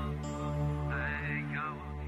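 Slow instrumental song intro: a sustained low drone under a high melody line that slides up and back down about a second in.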